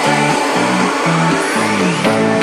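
Electro swing music with no vocals: a bouncing bass line under the band, with a rising sweep in the second half.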